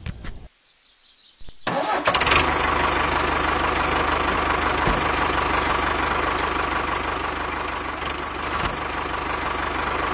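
A few small clicks, then a tractor engine starts about a second and a half in and settles into a steady idle.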